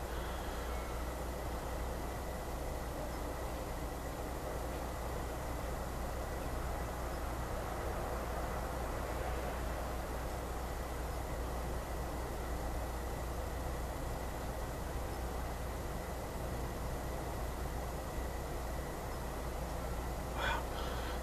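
Steady background noise with a low hum and a faint thin high tone, unchanging throughout; no speech.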